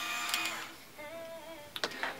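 InStyler Wet-to-Dry styler's motor-driven rotating heated barrel whirring steadily as it is run through a section of hair, fading out less than a second in.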